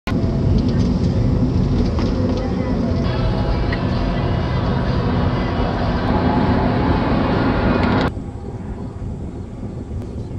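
Road and engine noise inside a car driving at highway speed. It cuts off abruptly about eight seconds in, leaving a much quieter outdoor hush.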